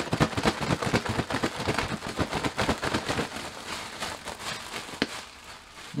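Raw russet potato fries being shaken in a plastic bread bag to coat them in oil: rapid, irregular crinkling of the plastic and rattling of the fries. It is busiest for about three and a half seconds, then thins out with one sharper click near the end.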